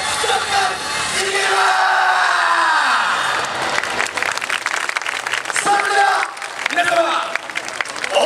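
Yosakoi dance performance: shouted calls over music on the street PA, a long falling vocal cry about two seconds in, then a burst of rapid sharp clacks before the shouting returns near the end.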